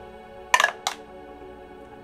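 Dice clattering in a dice tray: two quick sharp clatters about a third of a second apart, over steady background music.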